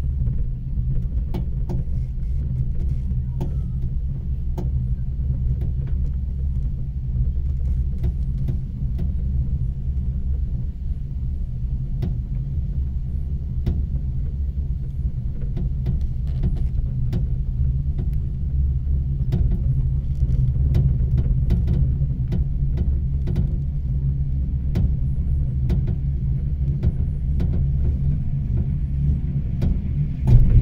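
Steady low rumble of a cable-car cabin riding along its haul rope, with scattered light clicks and creaks throughout.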